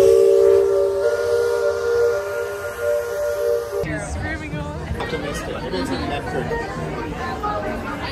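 A steam whistle sounding one long steady chord of several notes, loud, cut off suddenly about four seconds in; voices follow.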